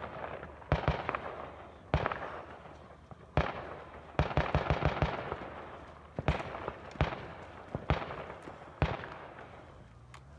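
About a dozen gunshots, each followed by a long echo that fades over a second or so, with a quick string of about five shots in under a second around the middle.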